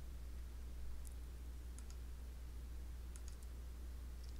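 Computer mouse clicking a few times while polygon points are placed on screen: a single click about a second in, a pair near two seconds, and a quick cluster after three seconds, over a steady low electrical hum.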